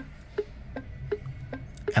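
Smart #3 turn-signal indicator sound ticking steadily through the car's speakers: short, soft clicks with a faint pitched note, a little under three a second.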